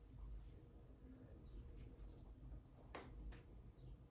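Near silence: room tone, with two faint short clicks about three seconds in.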